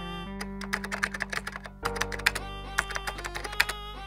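Quick, irregular typing on a computer keyboard that starts about half a second in, over background music with a held bass note.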